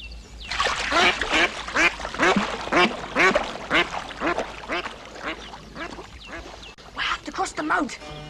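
A duck quacking in a quick series, about three to four quacks a second, with a short pause near the end before a few more quacks.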